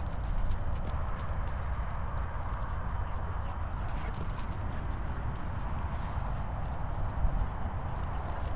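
Wind rumbling on the microphone, with a patter of soft thuds of feet running on grass.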